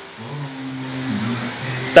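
A man's voice holding one long, low hesitation hum between phrases, its pitch dipping slightly about a second in.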